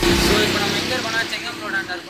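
Street noise with passing traffic and voices in the background, beginning suddenly as the music cuts off.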